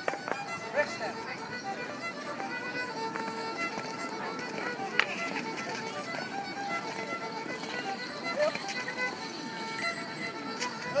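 A fiddle playing a lively traditional tune in short, separate notes for rapper sword dancing, over the murmur of an outdoor crowd. A few sharp clicks stand out, the clearest about five seconds in.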